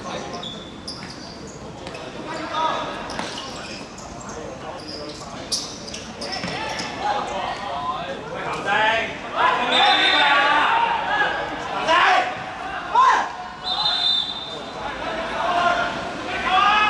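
Football being played on a hard outdoor court: sharp kicks and bounces of the ball, with players shouting, loudest from about the middle on as play stops and the players gather.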